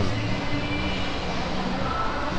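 Steady background din of a shopping mall interior, a constant hum and hiss with no distinct event.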